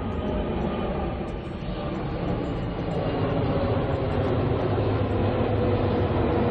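Jet airliner flying low overhead on its landing approach: a steady rushing engine noise with a faint whine that grows gradually louder.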